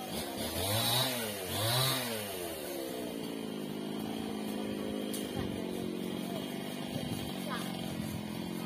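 Chainsaw revved twice in quick succession, then running steadily at a lower, even speed.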